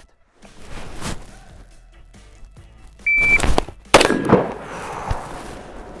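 Shot timer's start beep, then just under a second later a single rifle shot that echoes and dies away over the next second or two.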